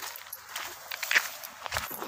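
Irregular footsteps and scuffs, with rustling handling noise; the loudest knock comes about a second in.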